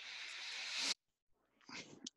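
A person's breath close to the microphone: a hissy breath in that grows louder for about a second, then stops sharply.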